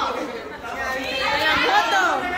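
Audience chatter in a large hall: many voices talking over one another, growing louder in the second half.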